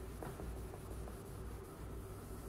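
Cloth rubbing back and forth across a tabletop, a faint scratchy wiping sound.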